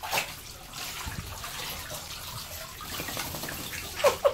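Bathwater splashing and sloshing in a bathtub as a wet husky moves about in shallow water while being bathed, with a sharp loud splash right at the start.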